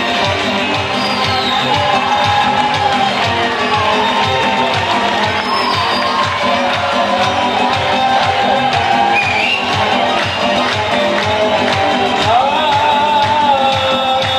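Live instrumental Kurdish pop music. An electronic keyboard plays a melody over a steady, quick drum-machine beat, with a santur alongside. Near the end the melody slides upward in pitch.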